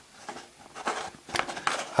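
Light handling of hard plastic toy parts: a few faint, short clicks and taps as pieces are held and shifted on the plastic playset base, mostly in the second half.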